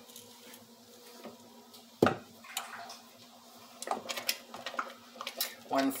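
A wooden spoon stirring thick soup in a stainless steel pot and knocking against the pot: one sharp knock about two seconds in, then lighter scattered clicks.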